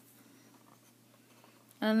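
Faint scratching of a pen drawing an arc on paper as it is swung around a Safe-T compass.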